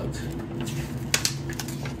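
Paper being handled: a few short rustles and clicks over a steady low hum.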